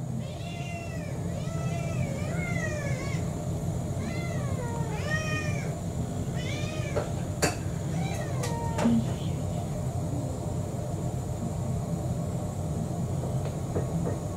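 Domestic cats meowing over and over to beg for their dinner: about seven rising-and-falling meows in the first nine seconds, then a pause. A steady low hum runs underneath, with a sharp click partway through.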